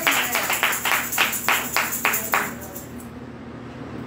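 Hands clapping in a steady rhythm, about five claps a second, stopping about two and a half seconds in.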